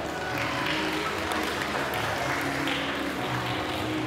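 Audience applauding, with faint music under it.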